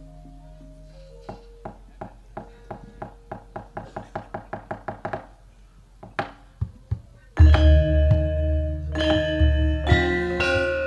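Soft gamelan tones, then a wooden knocking that starts about a second in and speeds up into a fast roll. It breaks off, a few single knocks follow, and about seven seconds in the full gamelan orchestra comes in loudly. This is the dalang's cempala knocking on the wooden puppet chest, the signal that cues the gamelan to play.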